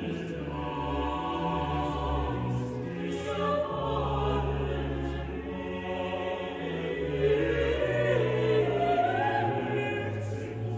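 Mixed choir singing slow, chorale-like chords in German, each chord held about a second before the next, with strings doubling the voices over a sustained bass line.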